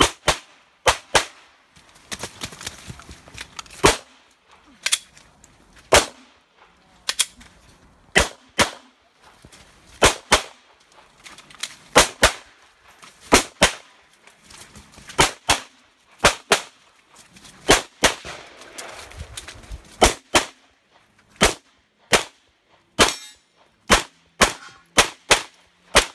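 Glock pistol shooting a course of fire: sharp shots, mostly fired in quick pairs about a third of a second apart, with pauses of one to two seconds between pairs as the shooter moves to new targets, about thirty shots in all.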